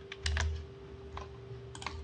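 Computer keyboard typing: several scattered light keystroke clicks as a time duration is keyed in. A faint steady hum sits underneath.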